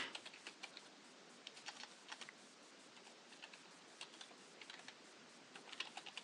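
Faint typing on a computer keyboard: irregular keystrokes with short pauses, a few louder ones near the end.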